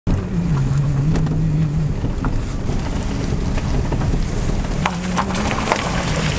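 Pickup truck running, heard from inside the cab as it drives: a steady low rumble with an engine note that drops and later rises in pitch, and scattered light rattles and clicks.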